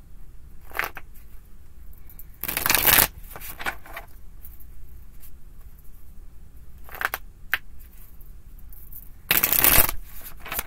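A tarot deck being shuffled by hand: two loud bursts of cards sliding against each other, about two and a half seconds in and again near the end, with a few short, fainter card flicks between them.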